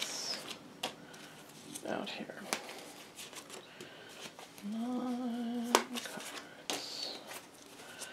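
Tarot cards being dealt one at a time from a hand-held deck onto a cloth-covered table: a run of light card snaps, flicks and slides. About five seconds in, a voice hums a short, slightly wavering note for about a second.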